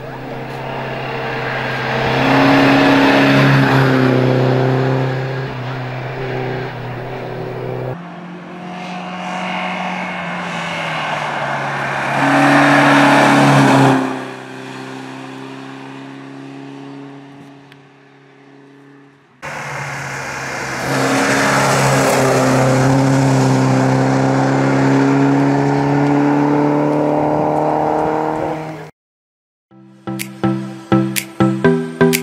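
Skoda Sport racing car's small four-cylinder engine running hard at high revs, its pitch climbing as it accelerates through the bends. Several passes are joined by sudden cuts; near the middle the engine fades as the car pulls away.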